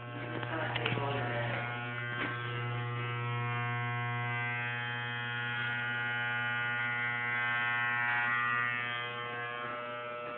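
Electric hair clippers buzzing steadily as they cut hair off the head for a mohawk.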